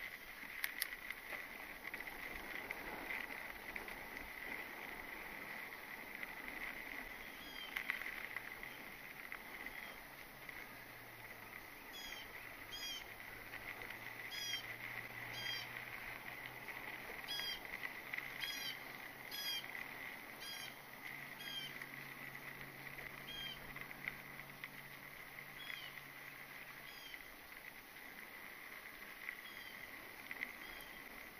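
A mountain bike rolling over a dirt and grass trail, a faint steady rolling noise throughout. Through the middle of the stretch a bird calls repeatedly in short chirps, and a faint low hum sits under it for much of the time.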